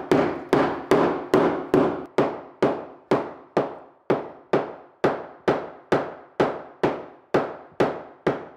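Hammer tapping rapidly on a hard floor to knock off crusted residue: an even run of sharp strikes, about two a second, each with a short ring, getting a little weaker towards the end.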